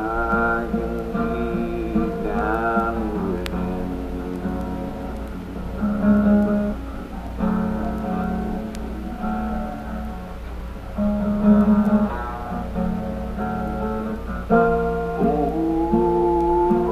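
Lo-fi solo recording of a guitar being picked, with a man's wavering, drawn-out singing near the start, again briefly about three seconds in, and coming back in near the end. A steady low hum runs underneath.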